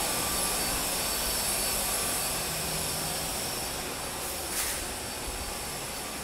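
Steady rushing background noise with a faint hum, easing slightly in level toward the end, and one brief hiss about two-thirds of the way through.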